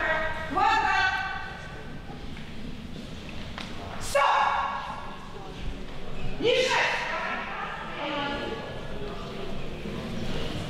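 A woman's voice calls out short, high-pitched commands to a dog, about four times, echoing in a large hall.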